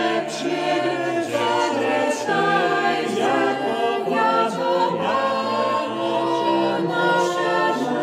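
A small mixed choir of men's and women's voices singing a Polish Christmas carol (kolęda) a cappella, in several parts at once.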